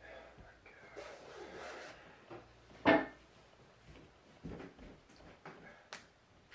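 Clothes rustling and being handled as laundry is sorted out of a basket, with a few light knocks. A single short vocal exclamation cuts in near the middle and is the loudest sound.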